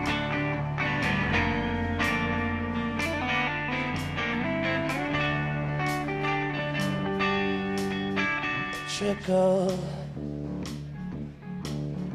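Live rock band playing an instrumental passage: electric guitars over bass and drums, with regular drum hits. The texture shifts about nine seconds in.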